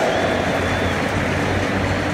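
Large stadium crowd cheering a player's name announced over the public address, a loud, steady wash of noise.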